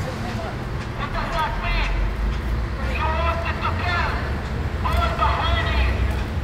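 People talking in short phrases, not clearly enough to make out, over a steady low rumble of traffic or an idling engine.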